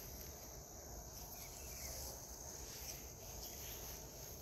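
Faint, steady, high-pitched insect chirring over a low rumble.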